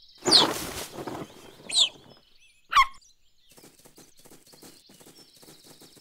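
Cartoon cheetah cub pushing through a leafy bush with a brief rustle, and three short, high, bird-like chirps: a falling whistle as it emerges, a rising one, then a louder falling chirp. Cheetah cubs chirp rather than meow, which is why it sounds like a bird.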